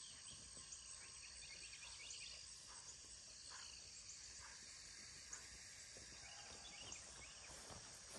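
Near silence: faint steady chirping of crickets in a pasture at dusk, with a few soft rustles.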